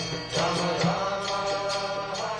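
Devotional chant music: voices singing a mantra over instruments, with a regular drum beat.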